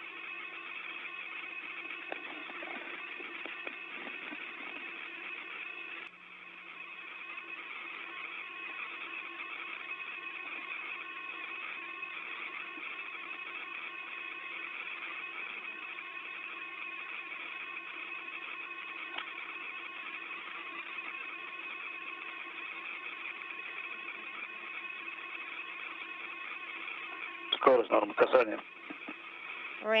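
Steady hiss with a few constant hum tones from an open space-to-ground radio audio channel, which dips briefly about six seconds in. Near the end a short, loud burst of radio sound breaks through.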